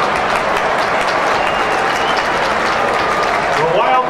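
Large stadium crowd applauding, a steady dense wash of clapping. Near the end a man's voice begins over the public-address system.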